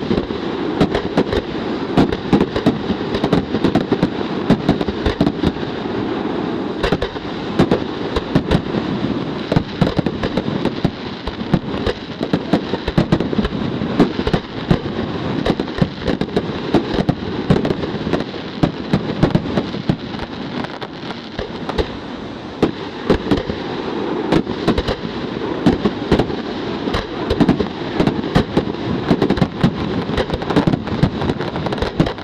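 Aerial fireworks going off in a dense, unbroken barrage: a steady rumble and crackle studded with many sharp bangs of shells bursting every second.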